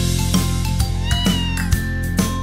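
A single cat meow, rising then falling in pitch, about a second in, over instrumental children's music with a steady beat.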